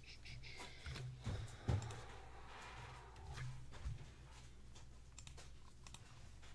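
Light clicking and handling noises at a desk, with a sharp thump a little under two seconds in and a softer one near four seconds, over a steady low hum.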